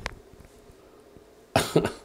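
A man's short cough: one brief burst about one and a half seconds in, after a moment of quiet room tone.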